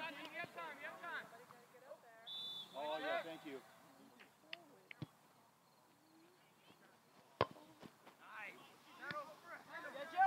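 Scattered distant shouting of players and spectators at a youth soccer match, with a short, steady, high whistle-like tone about two seconds in. Two sharp thuds come about five and seven seconds in, the second the loudest sound, typical of a soccer ball being kicked.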